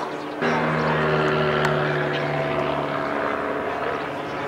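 Propeller-driven piston engine of a vintage aerobatic biplane in flight, a steady drone that comes in abruptly about half a second in.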